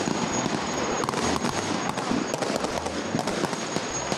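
Military gunfire: many sharp shots in quick, irregular succession over a noisy background, with a faint steady high whine underneath.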